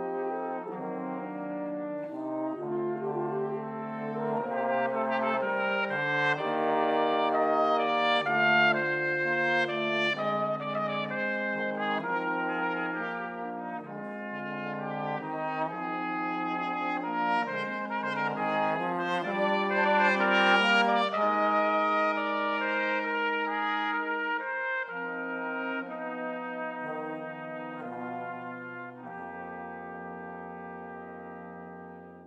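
Brass quintet of two trumpets, French horn, trombone and bass trombone playing sustained, slowly shifting chords. The music swells louder twice, then eases off near the end as the bass line drops to a low held note.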